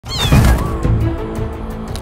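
A kitten meows right at the start, a short high call that falls in pitch, over background music.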